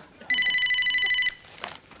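Telephone ringing once with an electronic trilling ring about a second long.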